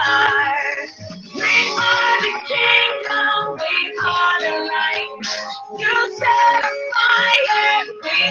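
Recorded Christian worship song playing: singing over instrumental accompaniment.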